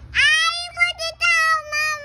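A toddler girl, nearly two years old, whining and crying in high-pitched, drawn-out wails, broken into several held stretches, while she is held in a tight hug.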